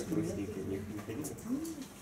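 Quiet, indistinct voices talking in a small room, in short pitched phrases.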